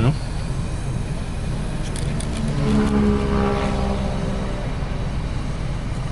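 Car engine and cabin rumble heard from inside the car, with an engine note that swells and fades about halfway through.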